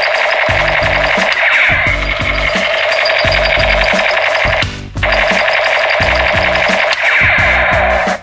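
Electronic sound effect of a battery-powered toy machine gun, played loud through its small built-in speaker while the trigger is held. It cuts out briefly a little past the middle, resumes, and stops right at the end. Background music with a steady beat plays underneath.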